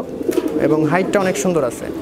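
Domestic pigeons cooing in a loft: low, drawn-out, warbling coos overlapping one another.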